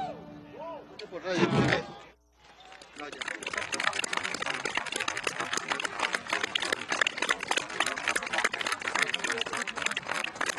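The last notes of a large orchestra die away with a few voices calling out. The sound cuts out briefly about two seconds in, then a very large crowd applauds steadily.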